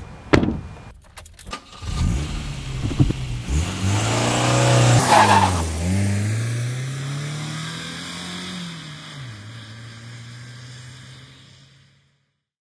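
Volkswagen Polo car: a sharp knock near the start, then the engine pulls away, revs rising, dipping at a gear change about six seconds in and rising again. The engine then holds steady and fades as the car drives off.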